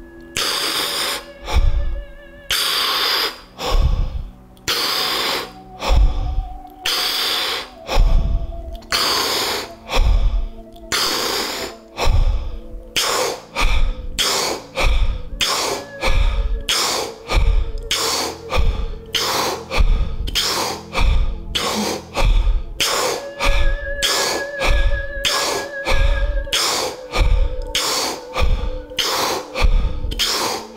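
A person breathing deeply and forcefully in a steady rhythm, each breath a loud rush of air, over a droning bed of meditation music. This is a round of Wim Hof-style deep breathing. The breaths come about every two seconds at first and quicken to about one a second from midway.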